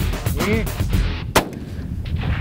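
A single hunting-rifle shot about one and a half seconds in, sharp and the loudest sound here, over background music.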